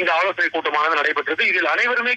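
Speech only: a voice talking without pause, with no other sound standing out.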